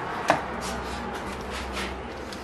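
Plastic Jeep JL grill parts being handled on a wooden workbench: one sharp click, then a few soft knocks and rubbing. A steady low hum runs underneath.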